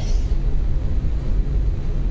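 A steady, loud low rumble with no clear pitch, running without a break under a pause in the speech.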